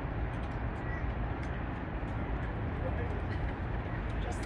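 Steady drone of road traffic, with a low rumble underneath and no single vehicle standing out.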